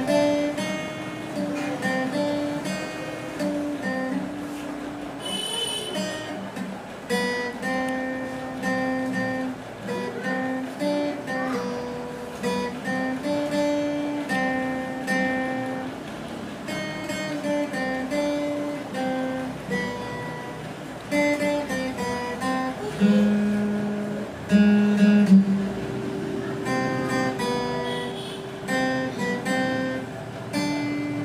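Yamaha acoustic guitar played solo, picking out a melody of single plucked notes with occasional chords and a few held notes.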